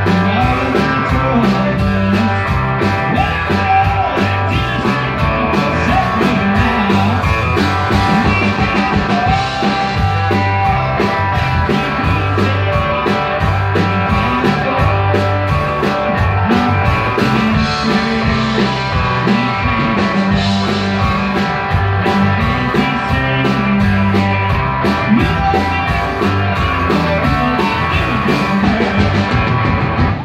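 A live band playing loud, continuous country-rock: electric guitar and bass guitar over a steady drum beat.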